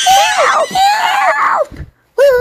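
A person screaming in fright: two loud, shrill cries back to back that end about a second and a half in.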